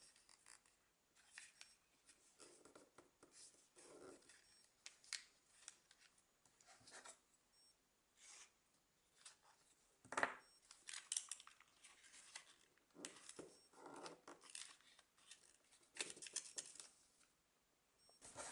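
Faint, scattered crinkling and rustling of a sheet of origami paper being folded and creased by hand, with a sharper crinkle about ten seconds in.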